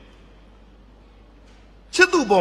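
A brief pause between a man's spoken phrases: only a faint steady background hiss with a low hum beneath it, and his voice comes back in right at the end.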